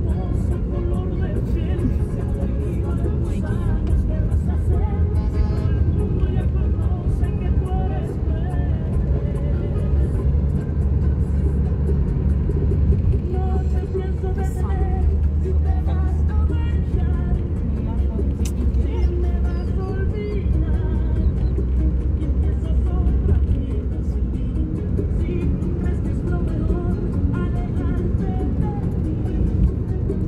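Steady road and engine rumble of a moving car heard from inside, with music and a voice playing over it.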